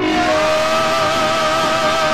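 A woman's voice holding one long sung note with vibrato in a Spanish-language worship song, over the band's accompaniment.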